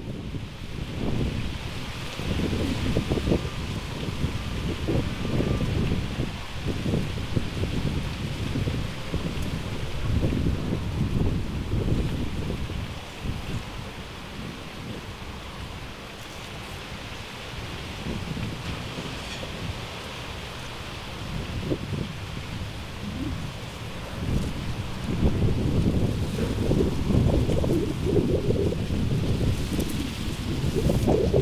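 Heavy wind blowing in gusts: a low, surging rumble over a steady higher hiss. The gusts ease off around the middle and build again near the end.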